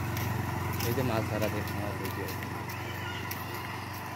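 A motorcycle engine's low, steady hum fades as the bike rides away down the road, with faint, brief voices of people nearby.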